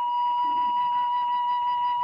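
Background music: one long steady note held on a flute-like wind instrument.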